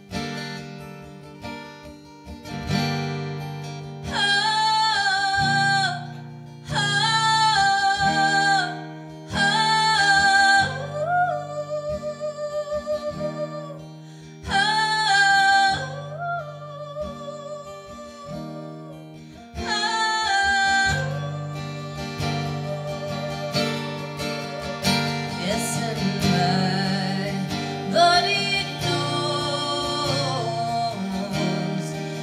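Acoustic guitar strummed under female voices singing in harmony, in a string of held phrases about two seconds long with short breaks between them. In the last third the voices and guitar grow fuller and denser.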